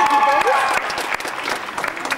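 Audience applauding, with several voices calling out over the clapping; it eases off in the second half.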